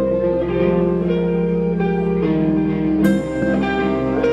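Live rock band playing: electric guitar and bass hold notes that change every half second or so. There is a sharp hit about three seconds in.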